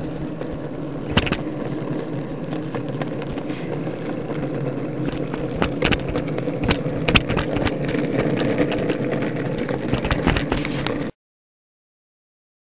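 A steady motor drone with scattered clicks and knocks, cutting off abruptly about a second before the end.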